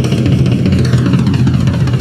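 Live rock drum solo on a full drum kit: a dense, fast run of drum strokes over a steady low drum rumble.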